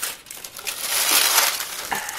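Thin plastic shrink wrap crinkling and crackling as it is stripped off a plastic tool case and crumpled, the rustle swelling through the middle.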